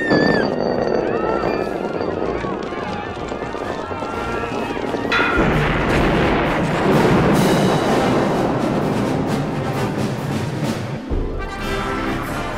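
Film soundtrack mixing an orchestral score with sound effects: people screaming and shouting, then a large explosion breaking in suddenly about five seconds in, with a dense blast rumble lasting several seconds before the orchestra takes over near the end.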